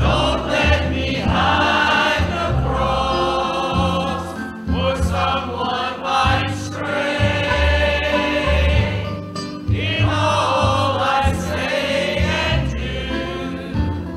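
A church choir singing a gospel hymn in phrases over sustained low instrumental accompaniment.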